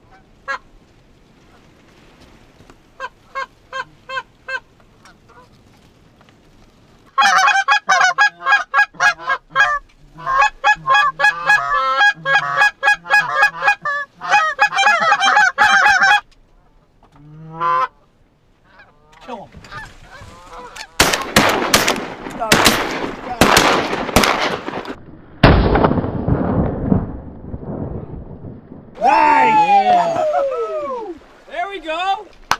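A flock of Canada geese honking as they circle in, faint at first and then loud and rhythmic for about ten seconds. About two-thirds of the way through comes a rapid volley of shotgun shots.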